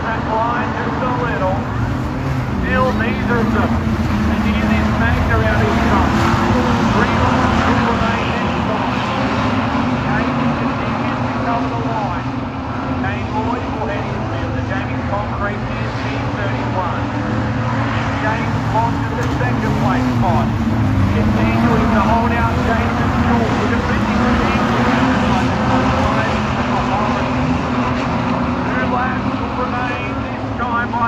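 A field of street stock race cars running laps on a dirt speedway oval, several engines revving and easing as the cars pass. The sound swells about a fifth of the way in and again about two-thirds of the way in as the pack comes by.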